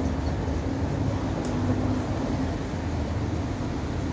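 Steady low electrical and mechanical hum of a tram standing at the stop, its tone holding level throughout.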